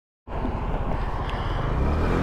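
A 50cc scooter's small engine running as the scooter pulls away, with a fast low pulsing and some wind and road noise. It starts about a quarter second in.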